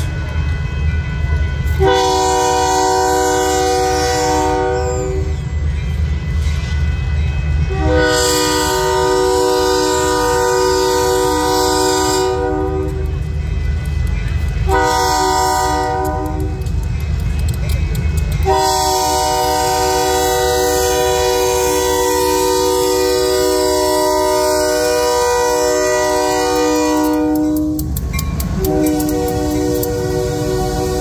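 Union Pacific diesel locomotive sounding its air horn as it approaches a street crossing: two long blasts, a short one, then a long one held for about nine seconds, with another blast starting near the end. This is the standard grade-crossing signal. Under the horn is the steady low rumble of the approaching locomotive.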